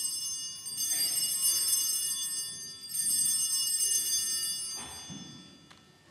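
Altar bell struck twice, about a second in and about three seconds in. Each stroke rings out with a bright, high, steady tone that fades away, marking the elevation of the host at the consecration.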